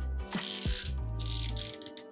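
Plastic zip tear-strip on a Mini Brands capsule ball being pulled off with a ratchety rasp. One long pull fills about the first half, with fainter scraps after it, over steady background music.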